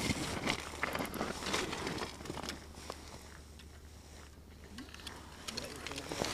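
Faint clicks and rustling from hands working a spinning rod, reel and fishing line over an ice hole, dying down about halfway through.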